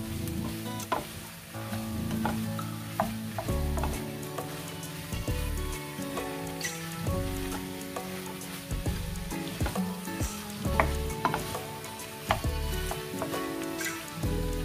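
Minced beef and onion sizzling in a frying pan as they brown, with a wooden spatula stirring and scraping against the pan in repeated sharp clicks. Background music with a bass line plays along.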